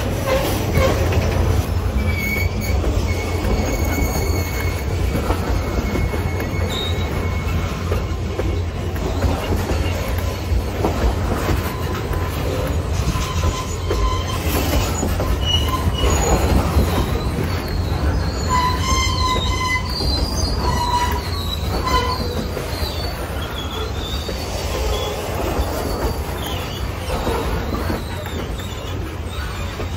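Freight train of boxcars and container cars rolling past close by: a loud, steady rumble of steel wheels on the rails, with thin wheel squeals coming and going, thickest about twenty seconds in.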